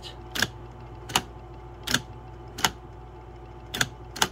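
Brother Correct-O-Ball XL-I electric typewriter's power shift working: five sharp solenoid clicks about three quarters of a second apart, the last one doubled, as the type ball rotates between its lowercase and uppercase halves.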